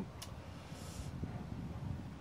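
Quiet background rumble with no clear source, a small click just after the start and a brief soft hiss about a second in.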